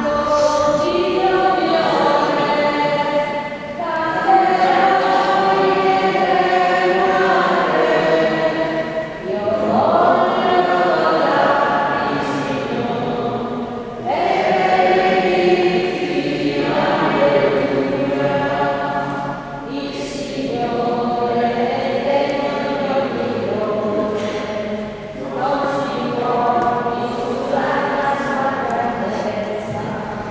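A church choir singing a hymn in sustained phrases of about five seconds each: the entrance hymn at the start of Mass.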